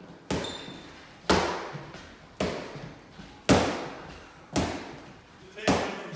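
Boxing gloves striking focus mitts: six sharp smacks about a second apart, each with a short echo off the bare room.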